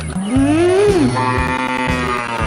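Cow mooing: a call that rises and then falls in pitch, followed by a longer level tone, over background music with a steady bass.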